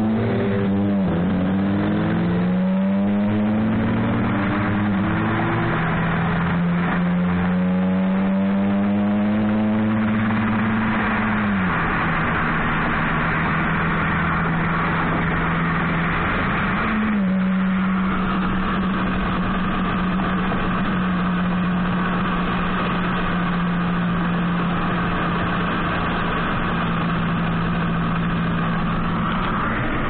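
Car engine accelerating hard through the gears, its pitch climbing and falling back at each shift in the first few seconds, then holding a steady drone at speed with road and wind noise, heard from inside the moving car. The engine eases off about twelve seconds in, picks up again briefly around seventeen seconds, then runs steady once more.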